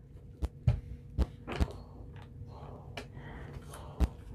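Steam iron being pressed and shifted on fabric over a padded ironing table: a few light knocks, about four in the first two seconds and another at the end, with a faint soft rustle between them.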